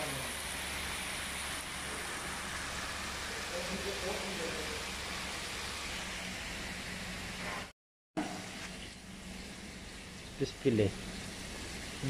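Battered fish fillets deep-frying in a commercial fryer: a steady hissing sizzle of bubbling oil that cuts off abruptly about eight seconds in. After that it is quieter, with a few short voice sounds near the end.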